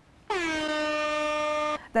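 A single steady air-horn blast lasting about a second and a half, its pitch dipping slightly as it starts, played as a sound effect to open the second round.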